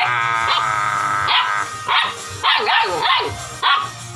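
A two-month-old Doberman pinscher puppy crying: one long, high whine held for about a second and a half, then a quick run of short, sharp yelps and barks.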